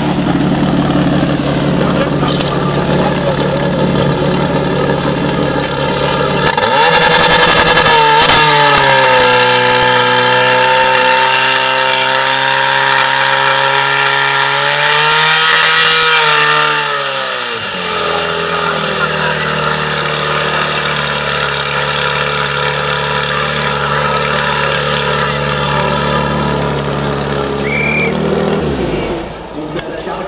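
Portable fire pump engine running at a steady fast idle, then opened up to full throttle about seven seconds in as it pumps water through the attack hoses. Under the load its note sags slowly, rises briefly, and then drops back about eighteen seconds in to a lower, steady run.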